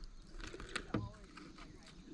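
A few faint clicks and rustles of hands working a hollow-body frog lure's hooks out of a bass's mouth.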